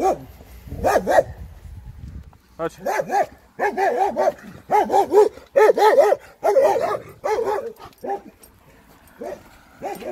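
A dog barking over and over, with a fast run of short barks from about three to eight seconds in and a few single barks before and after.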